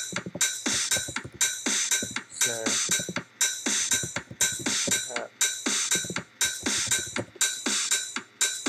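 Electronic drum loop from Reason's Kong drum designer, triggered by the Redrum step sequencer, playing a steady beat of about two hits a second: kick, snare, open hi-hat and shaker.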